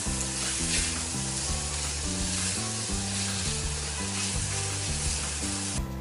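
Ham, bacon and mushrooms sautéing in butter in a stainless steel pan: a steady sizzle, stirred with a silicone spatula.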